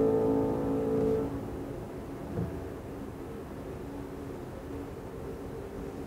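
Steinway grand piano's closing chord ringing out and dying away about a second in, leaving a faint lingering resonance in a reverberant hall.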